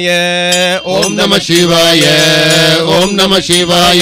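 A man singing a Tamil devotional bhajan to Shiva in long held notes that waver and glide in pitch.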